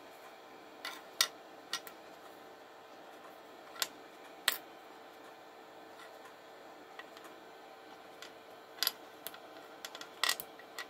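Hard plastic 3D-printed parts clicking and tapping as they are handled and set down on a printer bed: scattered sharp clicks, the loudest about a second in, over a faint steady hum.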